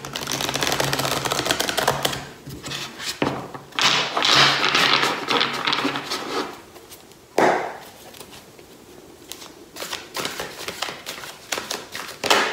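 Oracle card deck being riffle-shuffled on a tabletop, the cards fluttering together in two long rapid runs. A single knock comes about seven seconds in, and then a lighter patter of overhand shuffling follows near the end.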